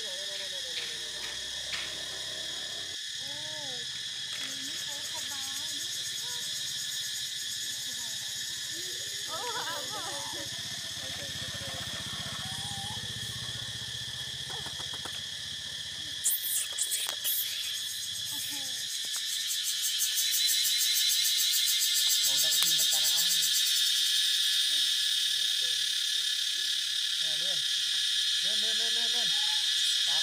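A steady, high-pitched insect chorus buzzes throughout and grows louder about two-thirds of the way in. A few short wavering calls and a brief cluster of sharp clicks come through over it.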